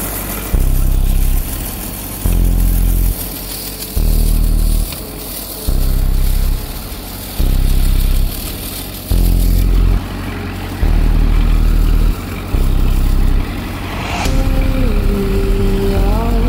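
Rakovica 60 tractor's diesel engine running as it drives across a field. A deep rumble swells and drops about every second and a half. Music with a singing voice comes in near the end.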